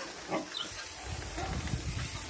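Dogs in a kennel run making a few short vocal sounds, over a steady background hiss, with a low rumble through the second second.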